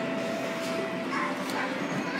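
Background din of an indoor amusement ride hall: a steady wash of noise with faint, distant children's voices, and a faint held tone that stops about halfway through.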